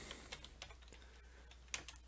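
Faint keystrokes of typing on a computer keyboard: scattered soft clicks with a quick cluster near the end, over a low steady hum.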